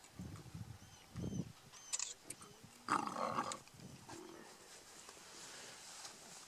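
Lions growling over a buffalo carcass while they feed: two low growls in the first second and a half, a sharp crack about two seconds in, then a louder, rougher snarl about three seconds in, the sound of lions squabbling over the kill. Faint bird chirps are in the background.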